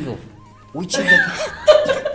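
Men chuckling and laughing, breaking out loudly about three-quarters of a second in after a short lull.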